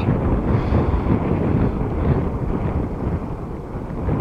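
Wind buffeting the microphone: a steady, uneven low rumble.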